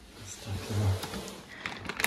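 Plastic insulated freezer bag rustling as hands grip its handle to open it, the crinkling growing louder near the end.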